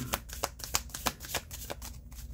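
A deck of tarot cards being shuffled in the hands: a rapid, uneven run of light clicks and flicks as cards slide and drop against one another.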